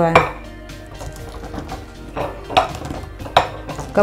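Chopped raw cabbage and beet pressed down by hand into a glass jar: irregular crunching with several sharp knocks and clinks against the glass.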